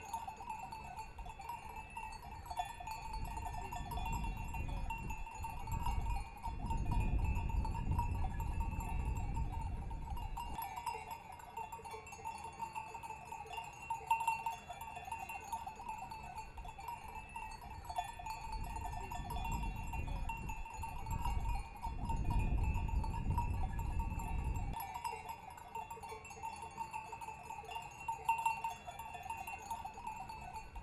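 Many livestock bells clanking together continuously, as from a flock of belled goats or sheep. Two long stretches of low rumble run under them, from about 3 to 10 seconds in and from about 19 to 25 seconds in.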